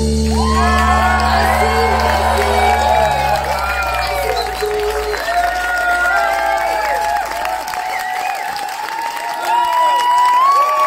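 The band's final chord rings out and fades away over several seconds while the audience cheers, whoops and claps.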